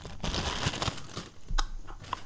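A pack of chewing gum being opened: the packet crinkles and rustles for about a second, then a few small clicks follow.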